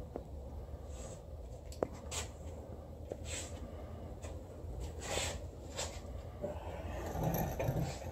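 A few faint clicks and light taps from hands handling the bare aluminium V6 engine, with a sharper single click about two seconds in, over a low steady hum.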